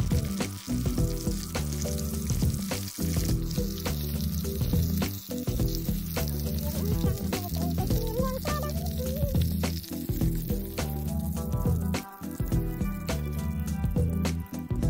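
Bird meat sizzling as it fries in oil in an aluminium pan, a steady crackling hiss, under background music with a repeating bass line.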